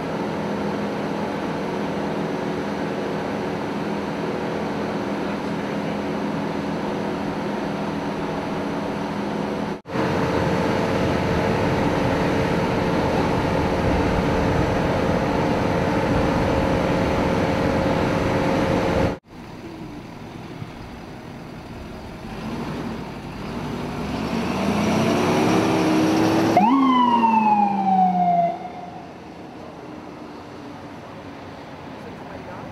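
A steady loud hum with fixed tones fills the first two thirds, its pitch changing at a cut about ten seconds in. Near the end an ambulance siren winds up and then falls in pitch, cutting off suddenly about two seconds later.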